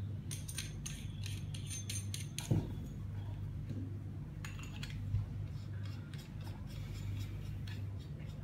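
Small metal parts of an e-hookah pen being screwed together by hand: runs of light metallic clicks and scraping from the threads, in three bursts, with a soft knock about two and a half seconds in. A steady low hum lies underneath.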